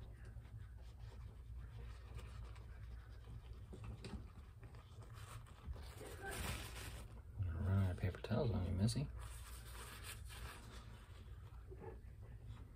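Paper towel rustling softly as it is rubbed and handled against a baby squirrel, with a louder rustle about six seconds in. A man's voice speaks briefly near the end.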